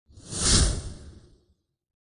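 A single whoosh sound effect with a deep rumble beneath it, swelling to a peak about half a second in and fading out by a second and a half: an intro swoosh for a logo reveal.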